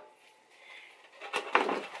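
A sharp knock from a metal box grater being handled, then a short scrape of a block of cocoa butter against it near the end.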